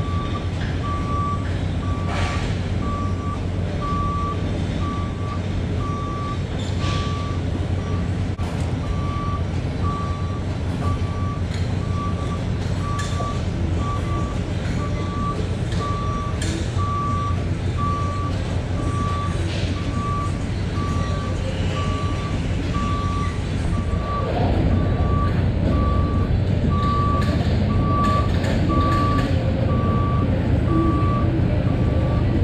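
Semi truck's backup alarm beeping steadily about once a second as the rig reverses, over the low hum of the diesel engine. The engine hum gets a little louder near the end.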